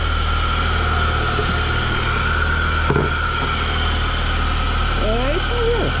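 Car engine idling steadily just after being started, with a newly fitted water pump, alongside a steady high-pitched whine.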